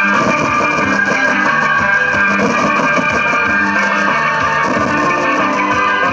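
Instrumental dance music with plucked strings over a steady drum beat, playing continuously without singing.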